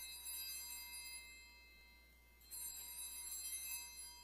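Altar bell struck twice, at the start and again about two and a half seconds in, each stroke ringing with a high, bright tone that slowly dies away. It is rung at the elevation of the chalice during the consecration.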